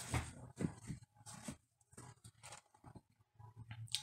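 Soft, irregular rustling and scraping of damp shredded-paper bedding in a plastic worm bin as it is moved about by hand, in short scattered bursts.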